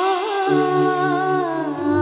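Dramatic background score: a wordless hummed vocal melody with wavering, ornamented pitch over sustained low drone notes that come in about half a second in.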